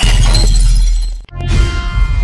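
Logo-reveal sound effect: a sudden loud crash with a shattering, glassy top over a deep bass hit. It breaks off about a second and a quarter in, then returns as a low rumble with falling tones.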